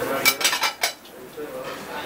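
Plates and cutlery clinking as dishes are handled at a kitchen counter: several sharp clinks close together in the first second, then quieter.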